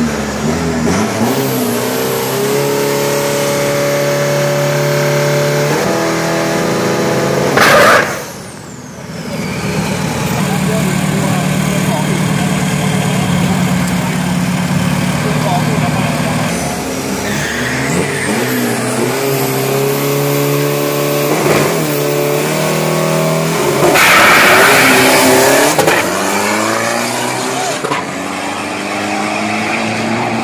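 Race-prepared Isuzu pickup engine running at a steady pitch that steps up and down, amid crowd chatter. A sharp loud burst comes about 8 seconds in, and a louder rush of noise follows later for about two seconds.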